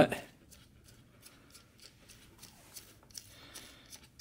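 Faint scattered clicks and light scraping of a plastic nut being turned by hand off the threaded body of a 12 V USB power outlet.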